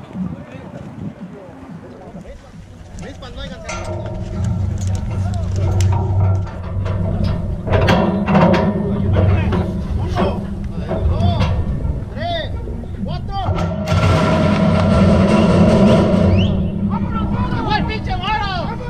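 Indistinct voices with music playing in the background, over a low rumble that sets in a few seconds in.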